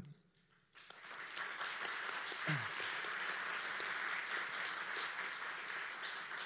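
Audience applauding. The clapping starts about a second in after a brief pause and holds steady.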